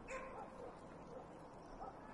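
Two faint, short dog whimpers, one just after the start and one near the end, over quiet outdoor background.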